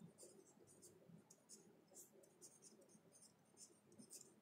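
Faint scratching of a felt-tip marker on paper as letters are written, in many short, irregular strokes.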